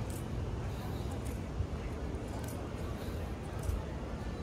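City street ambience: a steady hum of traffic and street noise with soft, irregular footstep thumps on the sidewalk and indistinct voices.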